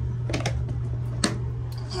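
A clear plastic storage tote being handled in a bathtub: a few sharp plastic clicks and knocks, the loudest a little over a second in, over a steady low hum.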